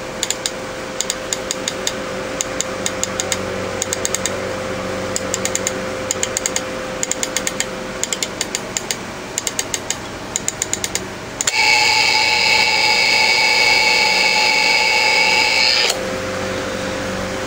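Vintage Sankyo Model 412 electric flip-number alarm clock: its knob is turned in quick runs of clicks for about eleven seconds, then the alarm goes off with a steady buzz for about four seconds and cuts off suddenly. The buzz is not very loud.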